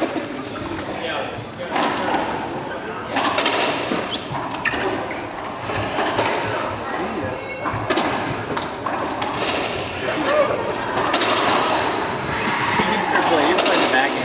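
Racquetball doubles play in an enclosed court: sharp smacks of the ball off racquets and walls, several of them a second or two apart.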